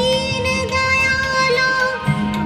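A woman singing one long held note in a Hindi devotional bhajan, accompanied by harmonium.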